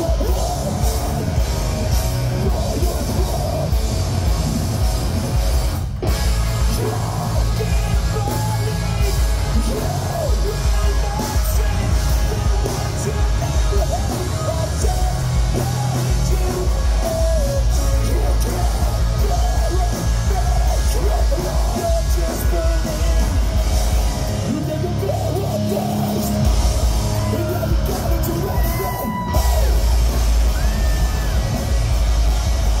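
Hardcore punk band playing live and loud, with distorted electric guitars, bass and drums under a singer shouting into the microphone. The sound cuts out for an instant about six seconds in.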